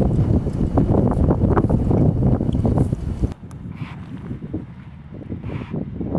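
Loud, gusty wind buffeting the microphone. It cuts off abruptly about three seconds in, leaving a much quieter outdoor background.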